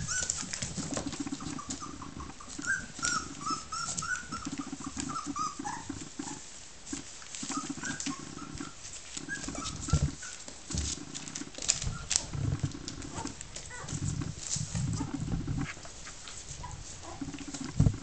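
Three-week-old Border Collie puppies play-fighting: short high squeaks and yips, repeated low grumbling growls, and scuffling with small clicks of claws and paws.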